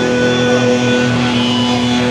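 Loud distorted electric guitar holding a steady, droning chord, with no drums.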